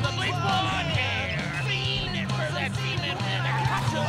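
A song with a steady, repeating bass line, with voices singing and calling along over it.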